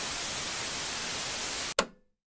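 Steady TV-style static hiss laid under an end card. Near the end it breaks off, then gives one short burst that fades quickly.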